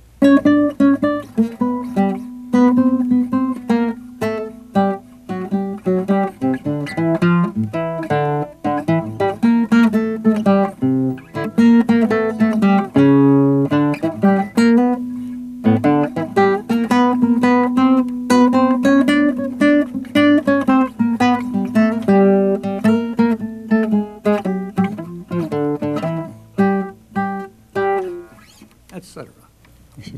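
Nylon-string classical guitar played fingerstyle: a blues line in octaves, the two notes of each octave plucked together, dying away near the end.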